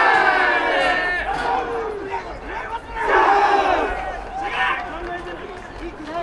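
American football team's pre-game huddle cheer: many players shouting together in loud surges, the biggest shout about three seconds in.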